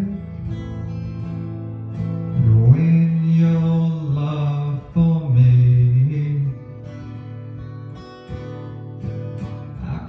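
An electric guitar and an acoustic guitar playing a soul tune together. The playing is louder through the middle, with long held low notes, and drops to a softer passage for the last few seconds.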